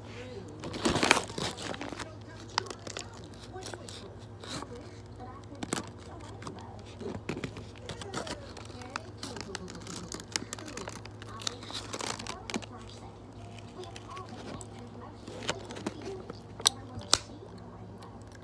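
Rustling and crinkling from close handling and movement, with scattered clicks over a steady low hum. The loudest rustle comes about a second in, and two sharp clicks come near the end.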